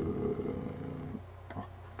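A man's long drawn-out hesitation sound "euh", held on one steady pitch, stops about a second in. A short pause with a faint click follows.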